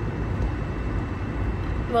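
Steady low rumble of car cabin noise, road and engine sound heard from inside the car.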